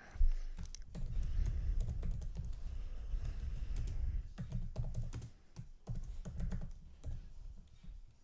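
Typing on a computer keyboard: a fast, uneven run of key clicks with soft low thuds, one louder knock just after the start and a brief pause about four seconds in.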